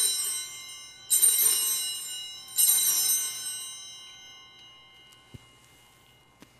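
Altar bells rung three times, about a second and a half apart, each ring a cluster of high bell tones fading away, marking the elevation of the consecrated host at Mass. A faint knock follows about five seconds in.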